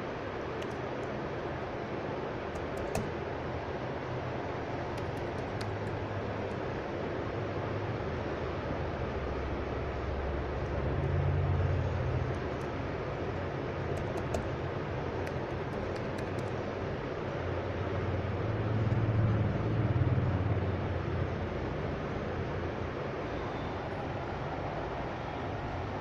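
Steady room noise from a fan or air conditioner, with faint scattered clicks of laptop keys as a password is typed. A low rumble swells and fades twice, about ten and nineteen seconds in.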